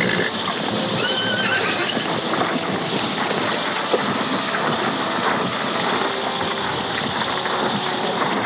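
Horses whinnying and stamping, with one shrill, wavering whinny about a second in over a continuous din of hooves.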